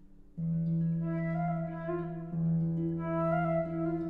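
Flute and concert harp playing chamber music. After a faint moment, the ensemble comes in suddenly about half a second in with held, pitched notes.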